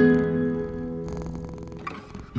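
An acoustic guitar chord rings out and fades away, and a cat's purring comes through as the guitar dies down, from about halfway in.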